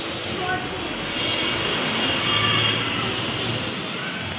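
A low engine drone from a passing vehicle, swelling about a second in and easing off near the end.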